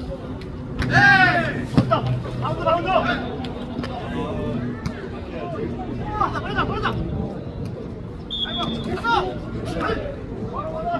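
Players' shouts and calls over background chatter during a jokgu rally, the loudest a high shout about a second in, with a few sharp knocks of the ball being kicked.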